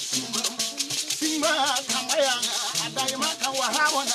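Traditional Bissa griot music: hand-held gourd shakers rattling in a fast, steady rhythm under men's singing voices, with a small plucked spike lute (koni).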